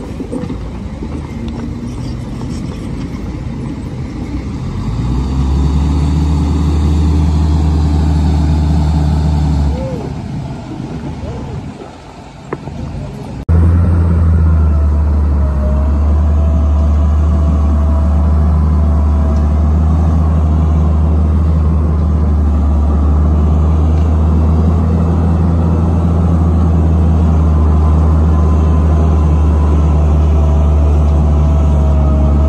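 Heavy diesel dump truck engines running with a steady low drone. The sound fades for a couple of seconds near the middle, then cuts back in suddenly and louder and holds steady.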